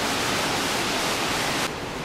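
Steady rushing hiss with no pitch to it, which drops away abruptly near the end.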